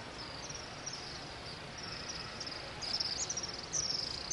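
A quiet pause with an even low hush from a large crowd. Short high chirps repeat irregularly, several a second, and come a little louder and thicker near the end.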